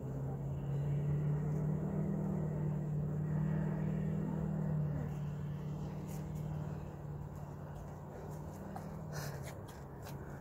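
A car engine running nearby, a steady low hum that is strongest in the first half and then eases off. A few short clicks come near the end.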